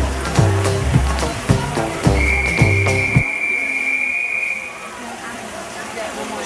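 A swimming referee's whistle blown in one long, steady blast of about three seconds: the long whistle that calls swimmers up onto the starting blocks. Music plays under the start of it and stops abruptly partway through.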